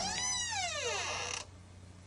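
The closing note of an instrumental track: a single pitched tone that bends up slightly, then slides down in pitch for about a second and fades out, leaving only faint hum.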